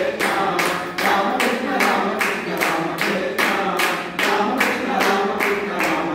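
Devotional bhajan singing, a man's voice carrying the melody, kept in time by steady hand clapping at about three claps a second.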